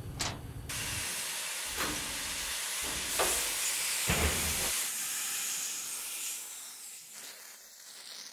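Sheet-metal workshop: a steady spraying hiss sets in sharply under a second in, is loudest in the middle and fades out near the end. Under it come a few heavy machine thumps and clicks from the punching and press-brake work on the steel enclosure panels.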